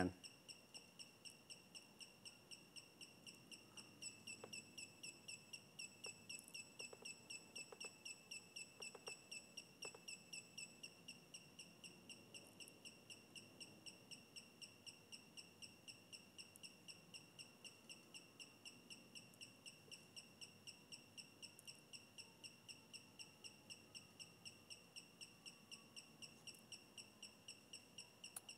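Brushless gimbal motors of an Alexmos SBGC 3-axis gimbal giving off a faint, high-pitched pulsing chirp, about three to four pulses a second, while the controller's auto PID tuning tests the yaw axis. A few faint clicks come between about 4 and 10 seconds in.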